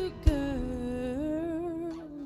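A woman singing one long held note, soft and close to humming, that dips in pitch and then climbs back. A short sharp strike sounds about a quarter of a second in, just before the note begins.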